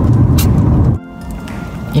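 Low, steady rumble of a car's cabin on the move, which cuts off abruptly about halfway through; faint steady music tones follow.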